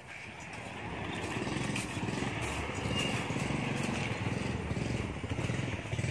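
Small motorcycle engine running, pulling a sidecar cart, growing louder over the first second and then holding steady.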